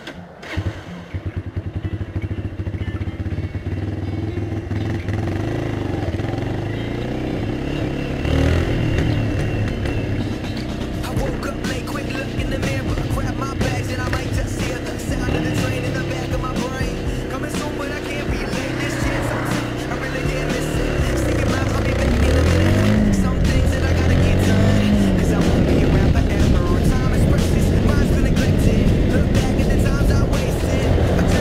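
Kymco Quannon 125 motorcycle's single-cylinder engine pulling away and accelerating through the gears, its pitch climbing and dropping back at each shift. It is louder in the last third as speed builds, with steady wind rush on the helmet camera.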